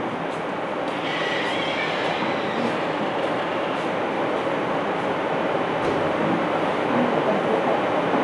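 A steady, fairly loud rushing rumble that holds at one level throughout, with a few faint brief tones about a second in.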